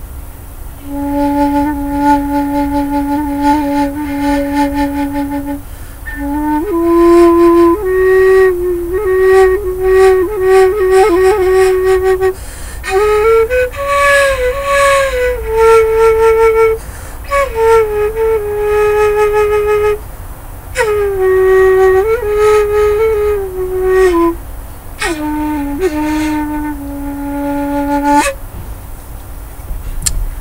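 Handmade bamboo end-blown flute in D, diatonic minor, played as a slow melody. It opens about a second in with a long held low note, then moves through held notes joined by slides and quick ornaments, rising and falling, and stops shortly before the end.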